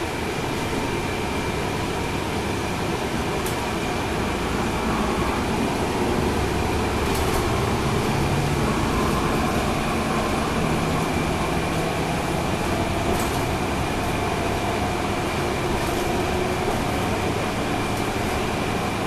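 Cabin noise at the rear of a NABI 40-SFW transit bus under way: its Cummins ISL9 diesel engine running with road and tyre noise, a steady high whine, and a few brief rattles. The engine gets a little louder for a few seconds midway.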